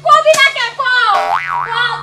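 A cartoon 'boing' sound effect, a springy wobbling tone that dips and rises in pitch about a second in, over a raised voice.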